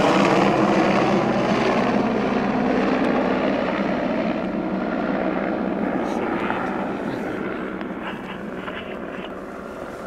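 Helicopter rotor and engine sounding overhead as the helicopter flies away, fading steadily.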